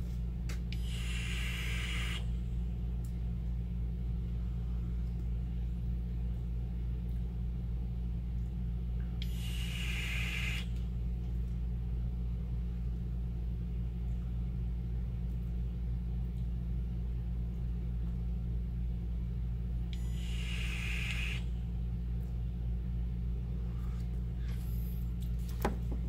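Three long breathy puffs, about ten seconds apart, of a person vaping and blowing out vapor, over a steady low hum.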